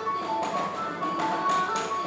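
Music playing: a melody of short, stepping notes over light tapping beats.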